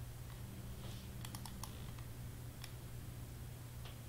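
Light clicks from working a computer: a quick run of about five clicks a little over a second in, then single clicks later, over a steady low electrical hum.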